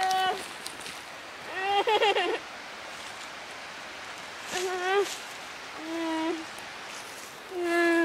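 A boy's high-pitched voice making short wordless sounds, four times, over a steady faint hiss.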